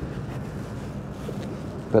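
Steady wind noise on the microphone over the low background sound of a motorboat under way at slow speed.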